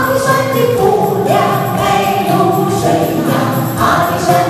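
Several voices singing together into microphones over an amplified backing track with a steady beat, in the style of a Taiwanese aboriginal folk-pop song.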